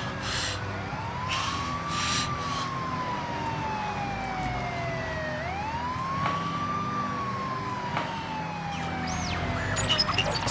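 Emergency vehicle siren in a slow wail: the pitch sweeps quickly up and then falls slowly, about every four seconds, twice over, above a low steady hum.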